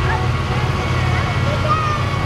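Compact tractor engines running steadily as the tractors drive slowly past, a continuous low rumble, with faint voices over it.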